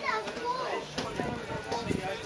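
Unclear voices of people in a busy pedestrian crowd, among them a child's high voice.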